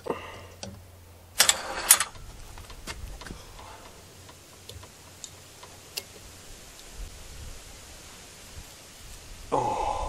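Hand tool scraping and prying at a spiral nail and broken wedge in the eye of an axe head, metal grating on metal and wood. There are two loud scrapes about a second and a half in, then light clicks and taps, and another scrape of noise near the end.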